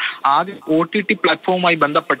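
Speech only: a voice talking steadily in Malayalam.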